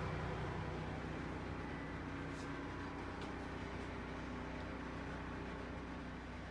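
Steady low machine hum made of several steady tones, with two faint clicks in the middle.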